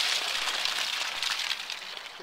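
Water running through a Ford Model A radiator during a flow test, pouring out of its lower outlet in a steady splashing stream onto the grass and growing quieter near the end.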